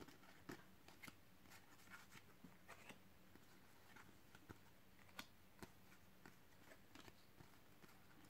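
Faint, scattered clicks and flicks of Panini Adrenalyn XL trading cards being slid one by one through a hand-held stack, over near silence.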